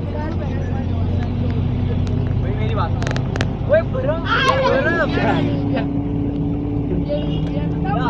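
Vehicle engine running steadily as the car drives, heard from inside the cabin; its hum rises a little in pitch about halfway through.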